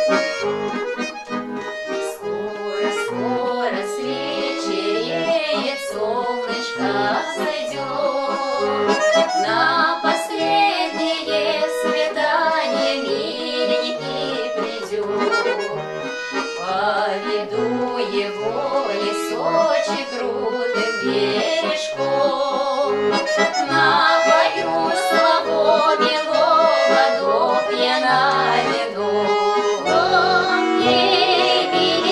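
Accordion playing a Russian folk-style tune without singing: a running melody over regular, evenly spaced bass notes.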